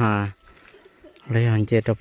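A man talking, with a pause of about a second in the middle.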